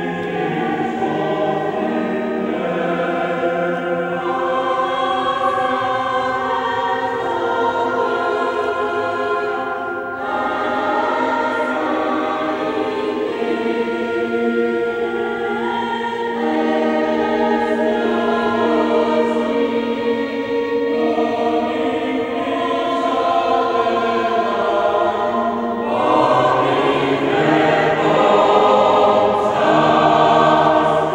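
Mixed choir of men's and women's voices singing sacred music in sustained, changing chords, with a brief dip about ten seconds in and growing louder near the end.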